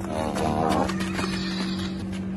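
Two-year-old Arabian colt whinnying: one call under a second long near the start, over a steady low hum.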